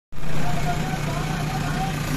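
JCB 3DX Super backhoe loader's diesel engine running steadily with a low, even hum.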